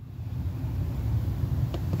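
Low rumble of a passing vehicle, heard from inside a car, growing steadily louder.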